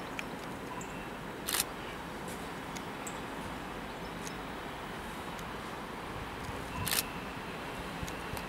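Steady hum of a Stadler Variobahn tram standing at a stop, broken by two sharp clicks about five and a half seconds apart, with a faint high steady tone starting just before the second click.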